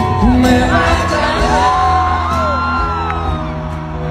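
Live concert music with a man singing into a microphone over the band, and whoops from the crowd.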